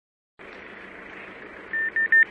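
Silence, then a steady hiss of street noise, and near the end a quick run of short, high-pitched electronic beeps, about five a second.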